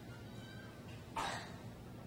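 Quiet room tone, broken about a second in by one short, breathy sound from a person, a quick cough-like puff of air.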